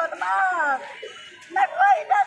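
A woman wailing in grief: a high, strained voice in falling, breaking cries, with a short quieter lull between two outbursts.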